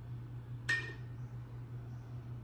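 A single sharp clink with a brief ringing tone, about two-thirds of a second in, over a steady low hum.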